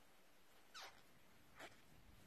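Near silence: room tone, broken twice by a faint, short sound falling in pitch, under a second apart.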